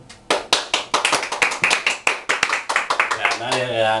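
A small group clapping by hand, the separate claps starting about a third of a second in and thinning out about three seconds in, when a man's voice comes in.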